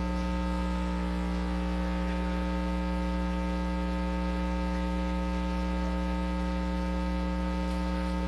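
Steady electrical mains hum with a buzzy edge from many overtones, carried on the chamber's open microphone line.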